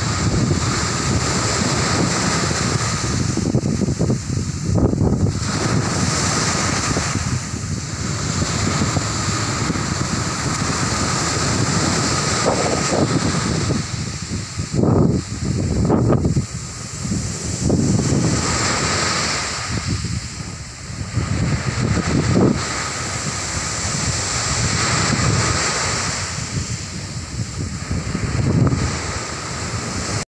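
Sea surf breaking and washing up a sandy beach in a steady rush, with wind buffeting the microphone in a few gusts around the middle.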